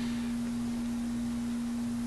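A steady low hum, one unchanging tone, over faint room hiss.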